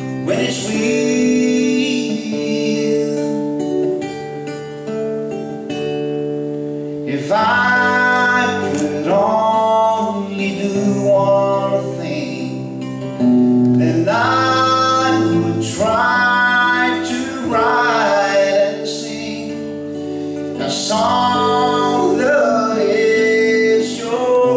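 A man singing while strumming an acoustic guitar, a live solo song with chords struck every couple of seconds under the voice.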